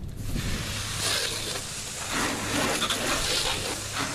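Water spraying from a garden hose nozzle onto a pickup truck's body and wheel: a steady hiss and splatter that swells and eases as the stream is moved.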